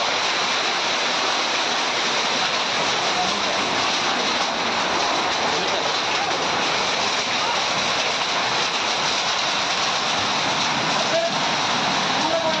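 Heavy rain and hail pelting down in a hailstorm: a dense, steady hiss of falling water and ice that does not let up.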